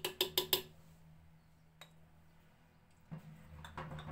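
A small metal spoon clinking about five times in quick succession against a jar or the pot rim while spice is measured into a clay cooking pot, then a single light tap and some softer handling noise near the end.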